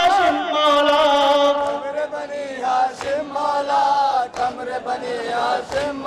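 Men chanting a Muharram nauha, a Shia mourning lament, in long wavering held notes.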